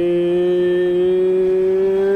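A singing voice in background music holding one long, steady note over a lower sustained drone.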